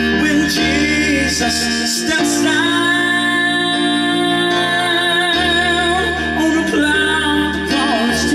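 Man singing a gospel ballad into a microphone over piano accompaniment, holding long notes with vibrato.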